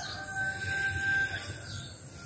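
A rooster crowing faintly, one long held call that ends about a second and a half in.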